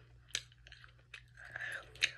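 Soft, wet chewing of gummy candy: faint mouth clicks, one sharper click about a third of a second in, and a short breathy sound near the end.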